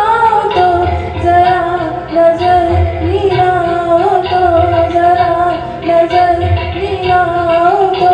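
A woman singing a song with a sustained, wavering melodic line into a handheld microphone, amplified through the hall's PA, over accompaniment with a regular low beat.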